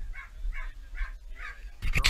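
Short high animal calls repeated about twice a second, over a low rumble of wind on the microphone; a burst of rustling noise starts near the end.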